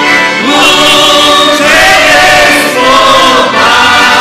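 Mixed choir of children and adults singing a Christian song in unison, with piano accordions accompanying.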